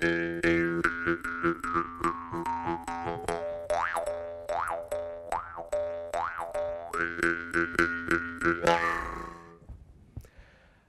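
Jaw harp (mouth harp) played by plucking its metal tongue in a quick, even rhythm: a steady twanging drone on one note, with the player's mouth shaping a melody of overtones above it. The overtone first slides slowly downward, then swoops up and back down four times in a row, like a 'wah'. It fades out shortly before the end.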